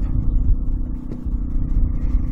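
Portable generator engine running steadily under load, a low rumble with a steady hum.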